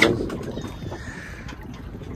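Steady low rush of wind and water around a small open boat at sea, with no engine clearly running.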